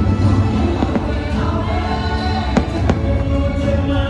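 Fireworks show soundtrack of music with a singing choir, played over loudspeakers. About two and a half seconds in, two sharp firework bangs come a third of a second apart.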